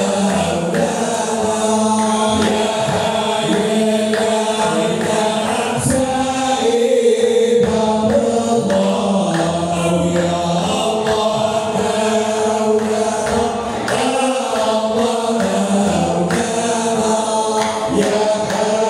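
Hamadcha Sufi brotherhood chanting together: a continuous chorus of voices holding long, slowly shifting sung lines without a break.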